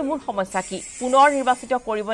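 A person speaking, with a steady high hiss behind the voice.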